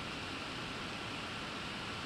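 Steady background hiss of room noise with a faint, thin, high-pitched whine running through it.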